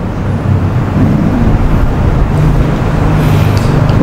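Loud low rumbling noise, with a steady low hum setting in about halfway through.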